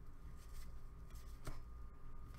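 Faint rustle and slide of trading cards handled in gloved hands as they are flipped through, with a light tick about one and a half seconds in, over a low steady hum.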